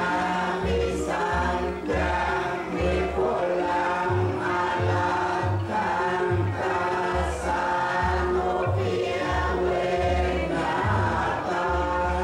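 Buddhist devotional chanting by a group of voices in unison, low-pitched and steady, in short repeated phrases about a second long.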